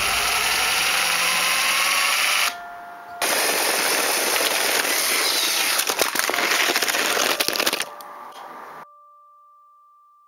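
Lego 9V train rattling along plastic track: a steady noisy rattle full of rapid clicks. It cuts out briefly about two and a half seconds in and stops near eight seconds, leaving a faint thin tone.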